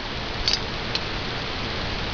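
Steady hiss of the recording's background noise, with two faint light clicks about half a second and a second in from hands handling the stripped 1911 pistol frame and its small parts.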